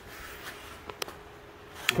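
Quiet workshop room tone with two small sharp clicks about a second in and a faint steady hum.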